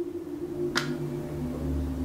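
Low sustained drone of ambient background music, with one short click a little under a second in.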